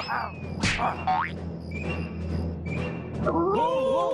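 Cartoon soundtrack: music with short sound effects, then a little after three seconds in a group of men's voices breaks into a loud, wavering 'oh-oh-oh' war cry.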